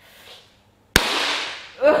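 A large green squiggly latex balloon bursting about a second in: one sharp, loud bang right at the microphone, with a short rush of noise trailing off behind it. Laughter follows near the end.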